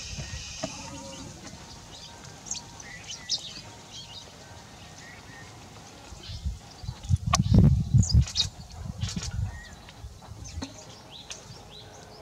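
Scattered short, high bird chirps, with a loud low rumble from about six and a half to nine and a half seconds in.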